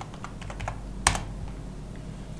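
Typing on a computer keyboard: a run of short key clicks, with one louder click about a second in.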